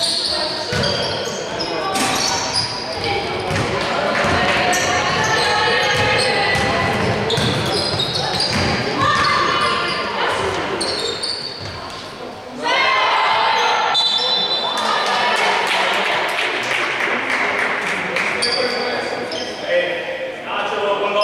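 Live basketball game sound in a sports hall: the ball bouncing on the wooden court and sneakers squeaking, with shouting voices of players and spectators echoing in the hall. The sound dips briefly near the middle, then picks up again.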